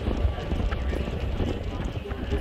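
Boat moving across choppy harbour water: a steady low rumble with irregular knocks and slaps.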